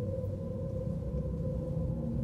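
A steady low drone and rumble with a faint held tone above it. It stays level throughout, with no knocks or other sudden sounds.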